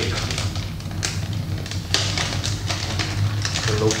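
Clear plastic packaging bag crinkling and crackling as the tape sealing it is peeled off and the bag is pulled open, over a steady low hum.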